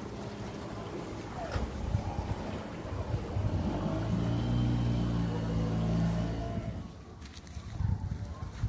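A small boat's engine running as the boat passes across the water. Its steady hum swells to its loudest in the middle and fades away near the end.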